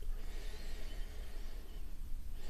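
A man sniffing a glass of beer: one faint, long inhale through the nose with his nose in the glass, over a low steady room hum.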